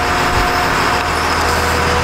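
Hagie self-propelled sprayer's diesel engine running steadily, a loud even mechanical hum with a thin steady whine over it.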